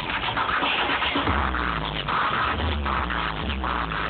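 A live DJ set played loud over a festival sound system: electronic music on a heavy, pulsing bass beat, with turntable scratching.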